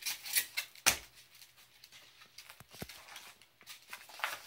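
Handling noise from a foam model-airplane fuselage: rustling of the foam body under the hands, a sharp knock just under a second in, and a few small clicks later on.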